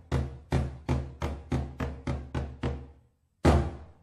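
Large Malay mosque beduk, a barrel drum, struck in a roll of about nine deep booming strikes that speed up, then after a pause one single strike. This is the traditional drumming that announces the call to prayer.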